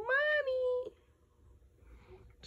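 A tabby cat meowing once: a single call just under a second long that rises in pitch and then holds steady.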